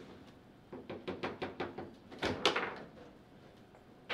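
Table football in play: the ball and rods knocking against the plastic figures and the table, a quick run of clicks about a second in and the loudest knocks a little past two seconds in.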